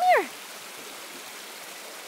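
Steady wash of water splashing as a dog paddles through shallow lake water toward the bank.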